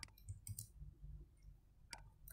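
A few faint, sharp clicks from a computer mouse and keyboard: one right at the start, a pair about half a second in, and another near the end.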